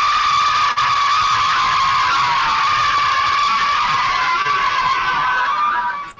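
A class of children screaming and cheering together in one long, loud, sustained cry. It comes through a video-call link, which cuts off its top end, and it fades out near the end.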